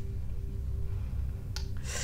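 A low steady hum with a faint held tone over it. About one and a half seconds in, there is a person's short, sharp intake of breath.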